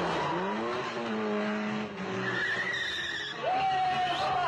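Car engines revving up, rising in pitch, and tyres screeching as the cars skid around a corner at speed. Near the end a tune begins.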